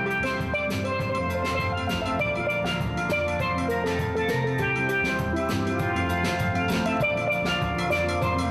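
A steel band playing: chrome steel pans struck with mallets ring out a rhythmic melody of bright, ringing notes over a drum beat.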